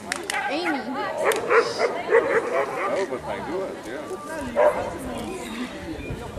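A dog yipping and barking several times in short rising-and-falling calls, mixed with people's voices.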